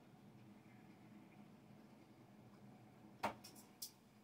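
Near silence: room tone, broken near the end by one sharp click followed by three fainter clicks.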